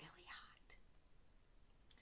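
Near silence between spoken sentences: a faint breath at the start, a small click about three-quarters of a second in, and another faint breath near the end.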